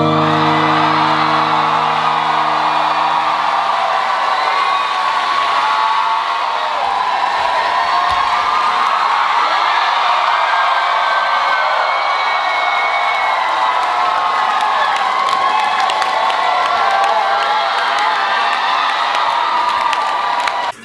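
A live audience cheering and whooping loudly, with clapping, as the dance track's last chord dies away over the first few seconds.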